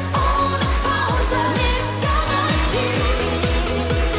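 A woman singing a schlager pop song live with a band, over a steady kick-drum beat about twice a second.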